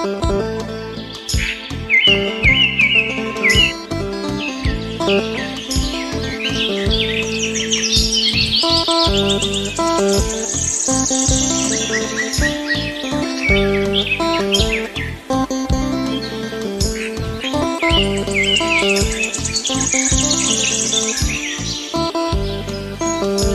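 Instrumental background music overlaid with birdsong: repeated high chirps and quick trilling phrases come and go over the music several times.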